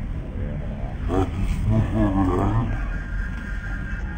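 Crowd noise outdoors: a low steady rumble of many people, with loud men's voices calling out between about one and three seconds in, then a thin steady high tone coming in near the end.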